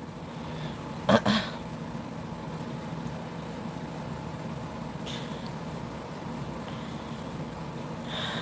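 Steady low background hum, with a short burst of voice about a second in and a much fainter one about five seconds in.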